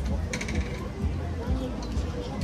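Background music with faint voices in the background and a steady low street rumble, with a brief light clatter about a third of a second in.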